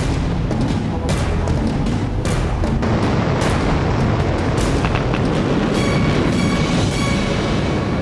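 Soundtrack of a Mars landing animation played over loudspeakers: music under a steady, heavy rocket-thruster rumble as the sky crane lowers the rover, with a few sharper hits and some held tones near the end.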